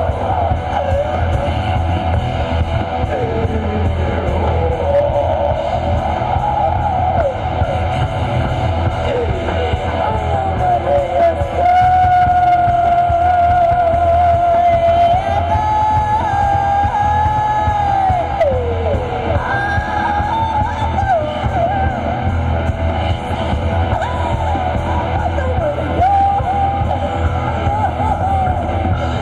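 A live rock band with electric guitar, bass, keyboards and drums playing loudly, over a steady low bass. A wavering lead melody holds long notes about halfway through.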